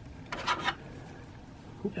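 Small plastic action-figure sword parts rubbing together in the hands as they are fitted onto a joining attachment: a brief scrape about half a second in, then a faint click near the end.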